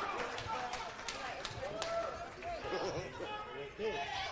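Indistinct chatter of several voices in a large room, with a few light clicks about a second or two in.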